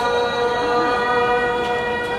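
A male ragni folk singer holding one long, steady vocal note over a sustained harmonium drone.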